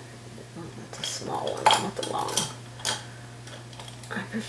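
Paintbrush handles clinking against each other and their holder as the brushes are sorted through, with several sharp clicks and rattles about one to three seconds in.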